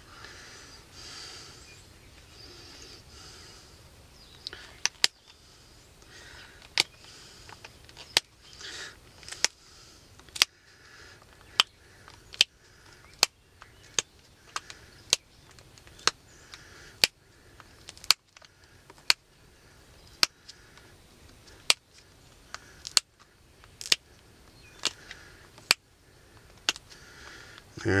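Flint arrowhead being pressure-flaked with an antler tine: sharp, short snapping clicks as small chips break off the edge, about one a second from a few seconds in, sometimes two close together.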